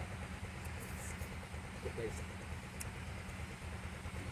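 A steady low motor drone, with a short faint voice about two seconds in.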